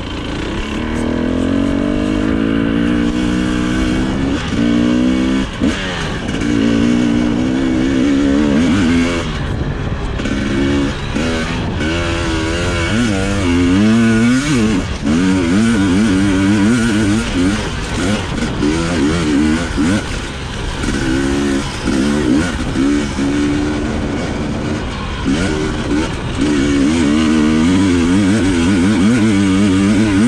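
Husqvarna TE 250i single-cylinder two-stroke enduro engine under way, revving up and down over and over as the throttle is opened and closed on a dirt trail; the pitch rises and falls every second or so.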